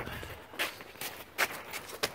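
Two short clicks about a second apart, handling noise from hands working around the motorcycle's fuel taps, over a faint hiss; the engine is not running.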